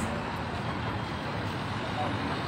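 Steady street traffic noise from cars driving slowly past.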